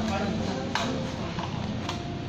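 Indistinct voices and restaurant background noise, with two sharp clicks a little over a second apart.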